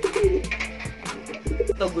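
Domestic pigeons cooing, with two low warbling bouts: one at the start and one about a second and a half in. Background music with a steady beat and deep bass plays throughout.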